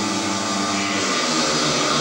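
Four speedway bikes' 500 cc single-cylinder methanol engines at full throttle, leaving the start gate and accelerating down the straight into the first bend: a loud, dense, steady engine sound.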